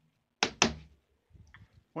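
Two quick, sharp knocks about a fifth of a second apart.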